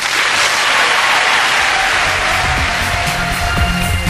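Studio audience applauding, with electronic music and a pulsing bass beat coming in under the applause about halfway through.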